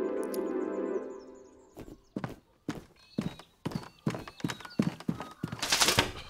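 A held music chord fades out, then cartoon footsteps tap along in short, sharp steps, about two to three a second. A brief noisy swish comes just before the end.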